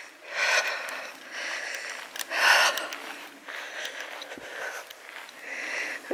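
Breathing of the person filming, close to the microphone while walking: a series of noisy breaths in and out, roughly one a second, the loudest about two and a half seconds in.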